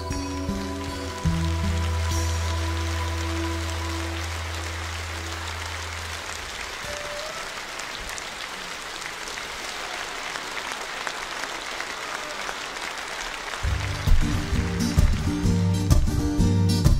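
A twelve-string acoustic guitar's closing chord rings out over audience applause. The applause carries on and slowly dies down, and about fourteen seconds in the guitar starts strumming again for the next song.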